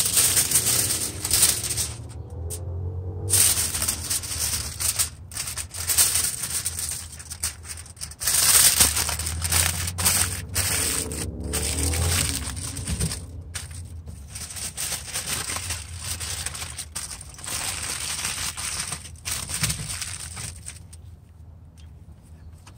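Cheap aluminium foil crinkling and crackling as a rack of smoked ribs is wrapped up by hand, in irregular crackles that thin out near the end.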